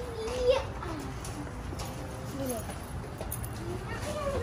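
Children's voices: short, high-pitched wordless calls and exclamations, the loudest just before half a second in, with a few light clicks and knocks in between.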